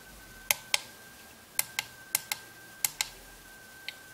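Small push buttons on a DSbluebox DCC command station clicking as they are pressed and released: four presses, each a pair of sharp clicks, then a lighter click near the end.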